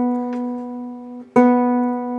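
A guitar that has not been tuned for a long time, struck and left ringing on one sustained pitch; it is struck again about 1.3 seconds in and rings on.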